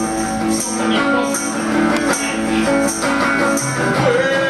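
Live band music: strummed guitar chords with a high percussion hit repeating about once a second.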